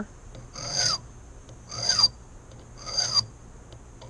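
Hand file rasping across a brass key blank in three slow, even strokes about a second apart. The file is taking down the cut at pin four, lowering it toward the depth the impression marks call for while impressioning a key.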